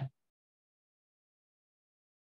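Silence, after the last syllable of a man's speech ends right at the start.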